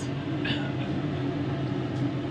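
Steady low mechanical hum, with a faint short higher sound about half a second in.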